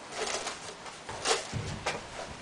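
Quiet rustling and a few soft taps of plastic stretch wrap being handled and pressed onto a steel rebar frame.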